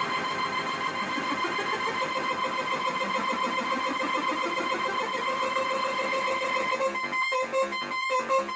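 Homemade 555/556-timer step sequencer giving a buzzy square-wave tone with a steady high whine. Its lower notes shift in pitch as its knobs are turned. About a second before the end the sound breaks into distinct stepped pulses, a few each second.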